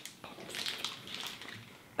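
Chewing and crunching a bite of a Reese's Outrageous candy bar, crumbly with Reese's Pieces: a run of small, quiet crunches that thin out near the end.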